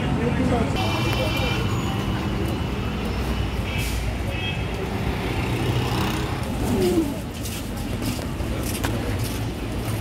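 Busy street-market ambience: many people's voices talking around, mixed with road traffic noise.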